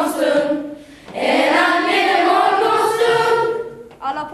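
Lucia choir of young voices singing a Lucia song. One phrase ends about a second in, and after a short breath a new long-held phrase begins and fades out near the end.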